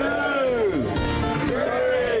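Background music with a steady tone running under it, and voices rising and falling over it.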